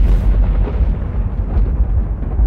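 Loud, deep sustained rumble of a cinematic logo-reveal sound effect, the tail of a boom that hits just before.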